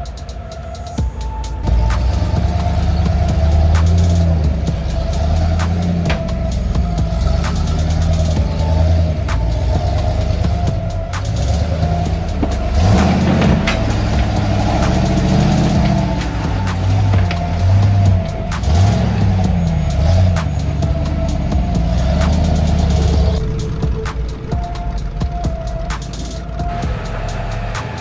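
Background music playing over the engines of lifted off-road trucks crawling over rocks, their revs rising and falling.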